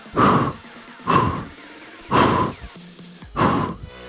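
A man's hard, forceful exhalations, four of them about a second apart, as he jumps both feet in and out from a plank. Background music plays underneath.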